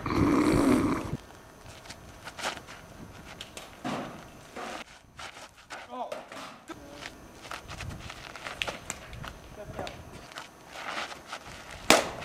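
A plastic Blitzball bat cracking against the hollow plastic ball once near the end, after a quieter stretch of scattered footsteps on dirt and brief voices. A loud rushing noise fills the first second.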